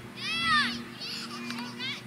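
A child's high-pitched yell, one call that rises briefly and then falls in pitch, with more children's voices after it.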